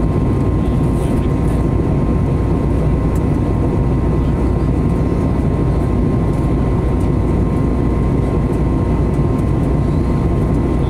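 Airliner cabin noise in flight: a loud, constant rumble and rush of air with a thin, steady whine running through it.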